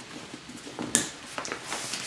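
Nylon fabric of a Herschel backpack and its rain cover rustling as it is handled and the cover is pulled out over the bag, with a sharp click about a second in.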